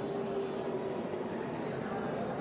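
Stock-car engines running at low speed under caution, a steady drone with no sharp impacts.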